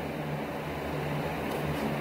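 Electric fan running steadily: an even hum with a soft airy hiss.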